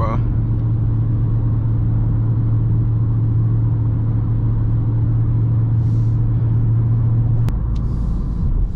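Dodge Charger Scat Pack's 392 HEMI V8 cruising at steady speed, heard inside the cabin as a steady low drone over road noise. Near the end there is a click and the drone drops away.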